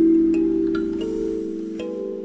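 Slow, soft instrumental music: struck, ringing notes of a melody sounding over held lower tones.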